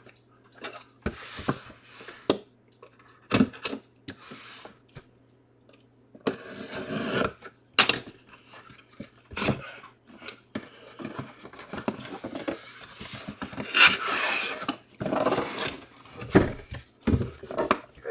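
Cardboard shipping box being opened by hand: tape cut and pulled, flaps folded back, and cardboard scraping and rustling as an inner box is slid out, with scattered sharp knocks and clicks.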